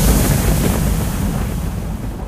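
The closing noise tail of an electronic dance track: a wash of noise over a deep rumble, with the beat and melody gone, slowly fading out as the track ends.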